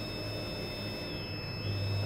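LED countdown timer's buzzer sounding one long, steady, high-pitched beep as the countdown reaches zero, its finish signal.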